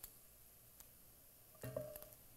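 Near silence: room tone with a few faint clicks. Near the end comes a short ringing sound with a clear pitch.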